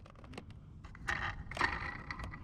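Faint handling noise from a foam RC airplane on dry dirt: a few small clicks, then a soft crunching and scraping from about a second in.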